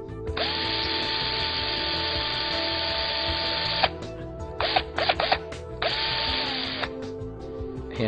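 Electric power drill running: it spins up and runs for about three and a half seconds, then gives a few quick trigger blips, then one more short run that winds down, over steady background music.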